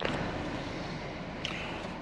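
Steady road and tyre noise of a car rolling slowly on a gravel road, heard from inside the car.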